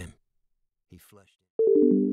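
Short electronic sound-logo chime: a quick run of falling notes that ring on together as a held chord, starting about one and a half seconds in, after a moment of silence.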